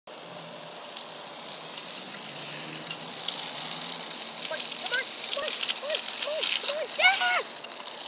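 A small Lego RC car's motor and plastic wheels rolling over concrete and paving bricks: a high hiss with small clicks and rattles that grows louder as the car comes closer. From about halfway, short rise-and-fall vocal sounds repeat about twice a second, loudest near the end.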